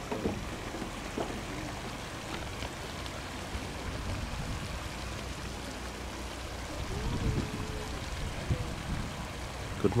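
Water running steadily over an infinity pool's overflow edge: a continuous, even rushing.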